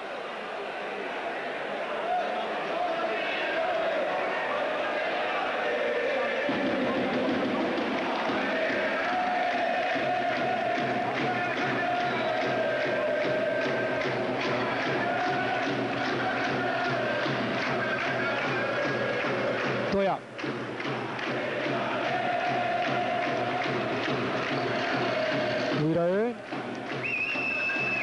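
Basketball arena crowd chanting in unison over a steady rhythmic beat, the sustained chant rising and falling in pitch.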